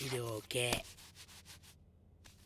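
Two short falling vocal sounds from a man, then faint scratching of a pen on newspaper.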